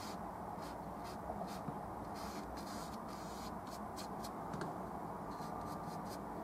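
Bristle brush scrubbing oil paint onto stretched canvas: a run of short, irregular scratchy strokes, a few a second, over a steady low background hum.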